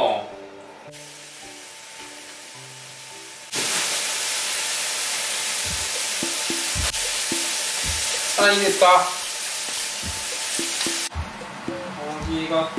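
A loud steady hiss starts suddenly a few seconds in and cuts off near the end, with a few low thumps and a brief voice under it. Soft background music plays before the hiss begins.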